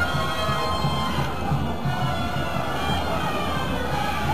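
Carnival street-bloco music playing with a steady rhythm and held tones, over the noise of a street crowd.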